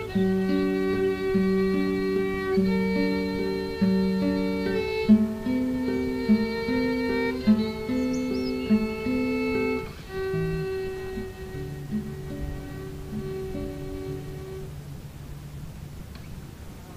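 Instrumental music for classical guitar and violin: the guitar picks a steady run of single notes while the violin plays along, and the playing turns softer and lower about ten seconds in.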